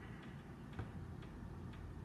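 Faint room tone with a few soft, short ticks over a low steady hum.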